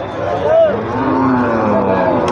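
Cattle mooing: one long call starts just under a second in and carries on past the end, over the chatter of a crowd.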